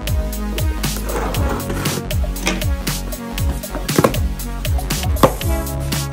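Background music with a steady beat, over which a cardboard shipping box is handled: a rough scraping rustle about a second in, then two sharp cracks near the end as its taped flaps are pulled open.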